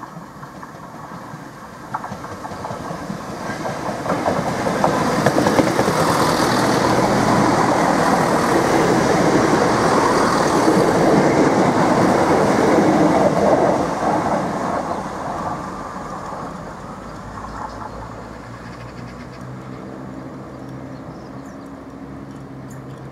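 Two coupled Class 170 Turbostar diesel multiple units passing through the station: the rumble of wheels on rail and underfloor diesel engines builds to a loud peak between about five and fourteen seconds, then fades as the train goes away, leaving a lower steady hum near the end.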